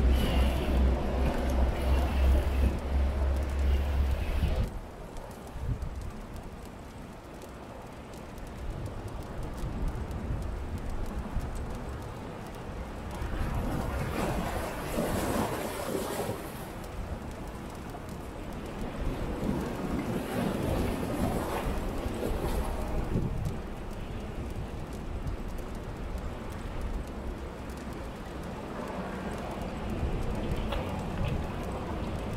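Outdoor seaside ambience: wind buffeting the microphone with a heavy low rumble for the first few seconds, then a steady wash of wind and surf. About midway there is a louder hissing patch as liquid is poured from a bottle over the wood fire and hot plate.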